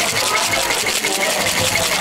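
Ice cubes rattling in a cocktail shaker being shaken, in a fast, even rhythm.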